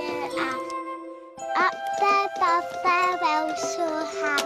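Tinkly electronic children's tune from a toy, playing short pitched notes with a brief pause about a second in.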